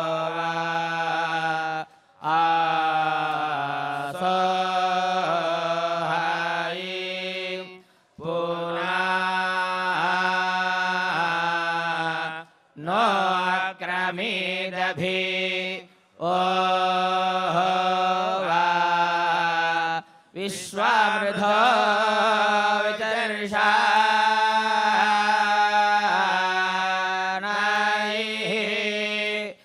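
Male voices chanting the Vedas together, holding each syllable on a steady pitch that steps between a few notes, in phrases of a few seconds with short breaks for breath between them.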